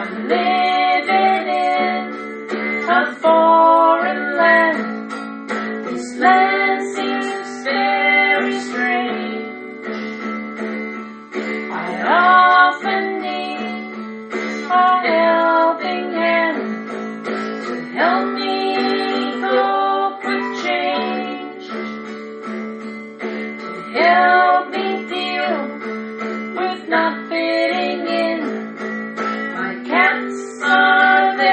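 A song on acoustic guitar, with a woman's voice singing a wavering melody over it.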